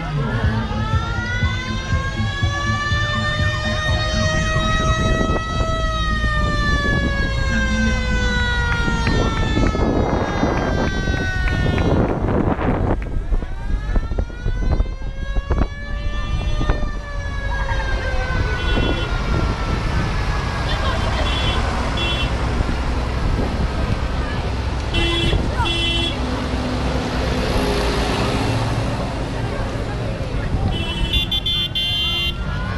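A siren winding slowly up and then down in pitch, twice, each rise and fall taking around ten seconds, over the rumble of vehicle engines. Short repeated horn beeps come in the last third.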